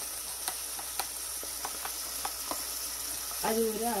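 Oil and ghee sizzling steadily in a pressure cooker as onions and tomatoes fry, with a few sharp crackles scattered through.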